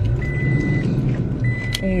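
Rummaging through a handbag inside a vehicle cab: a rustling noise over the steady low hum of the vehicle. A thin, high steady tone sounds twice, each time for about half a second.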